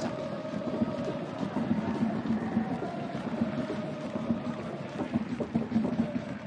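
Football stadium crowd ambience: steady crowd noise with no single event standing out.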